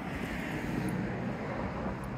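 Road traffic rumble on a residential street, a steady low noise that swells a little about a second in.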